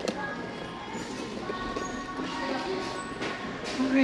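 Store background: faint music over a shop sound system and distant voices, with a few sharp clicks of handbags and their hooks being pushed along a metal display rack.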